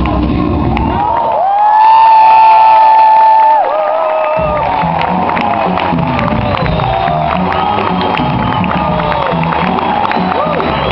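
Samba music that drops its bass and rises to one long held note of about two seconds, the loudest moment, then a crowd cheering and whooping with the music still going.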